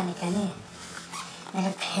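Only speech: a man talking, his voice picked up by a hidden camera.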